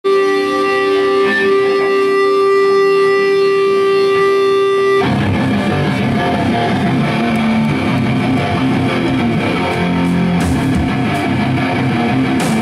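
Loud live rock band. A single electric guitar note or chord is held steady for about five seconds, then distorted electric guitars, bass and drums come in together.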